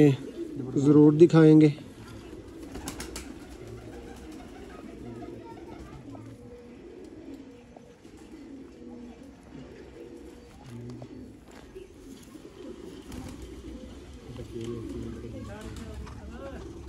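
Domestic pigeons cooing steadily in the background, with a man's voice loud briefly at the start.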